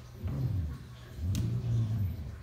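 Self-balancing hoverboard rolling on a wooden floor, a low rumble of its wheels and motors that swells twice, with a sharp click about one and a half seconds in.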